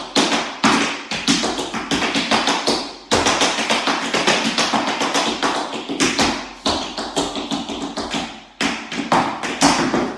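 Tap shoes striking a tap board in rapid, continuous runs of taps, with short breaks about three and eight and a half seconds in.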